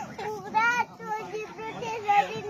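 A young boy's high voice pleading, in a drawn-out wavering tone.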